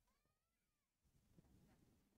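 Near silence, with a very faint short tone near the start that rises and falls once.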